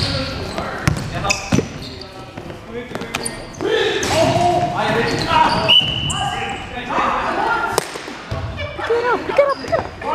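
A basketball being dribbled on a gym floor, sharp bounces scattered through, among players' voices calling out in a large indoor hall.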